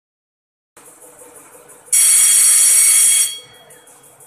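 Electronic buzzer on a test bench's control panel sounding one loud, steady, high-pitched beep about a second and a half long, starting about two seconds in.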